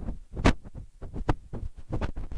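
A quick run of irregular thumps and knocks, about four or five a second, the strongest about half a second in.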